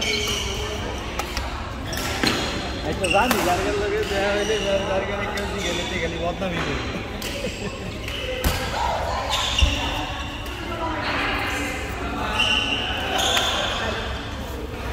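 Badminton play on an indoor court: shoes squeaking on the floor in short bursts and sharp knocks of racket on shuttlecock, over talk from players and onlookers in an echoing hall. The loudest sound is a single knock about ten seconds in.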